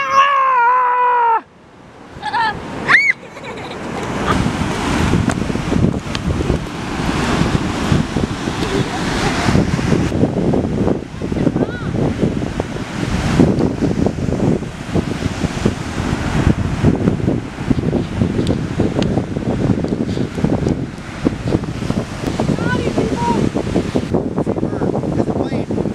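A voice humming a tune for about a second, then, after a brief dip, wind buffeting the microphone over surf breaking on the shore, a steady rushing noise.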